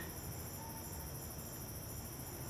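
Night chorus of crickets: a steady high-pitched trill with a regular pulsing chirp layered above it.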